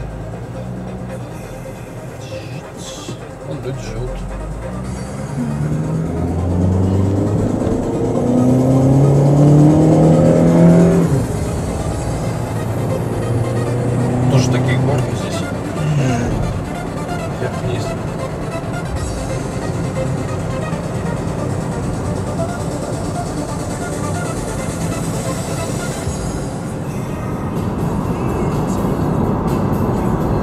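Road and engine noise inside a moving car, with the engine's pitch rising as the car speeds up over several seconds in the first half.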